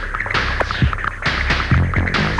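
Early-1980s electropop played on synthesizer keyboards: a throbbing synth bass line under a steady electronic beat, about two kick thumps a second, with hissing swishes on top.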